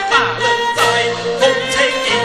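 Teochew opera ensemble music: a melody of held, stepping notes with sharp percussion strikes.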